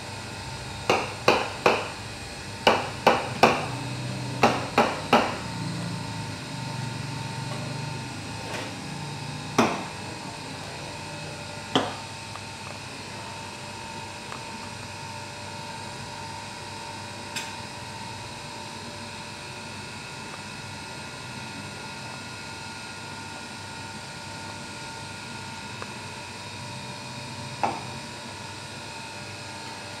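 Sharp knocks of barista equipment against the counter, in three quick sets of three during the first five seconds, then a few single knocks later, over a steady low hum.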